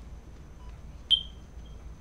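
A single short, high-pitched electronic beep about a second in that dies away quickly, over a faint low hum.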